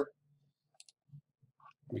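A few faint, short clicks at a computer, spread over about a second, from selecting cells in a spreadsheet.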